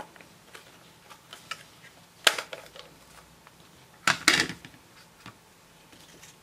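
Plastic craft supplies handled on a tabletop, with light scattered clicks. There is a sharp click about two seconds in and a louder clatter of several knocks around four seconds, as a plastic ink pad case is set down and its lid opened.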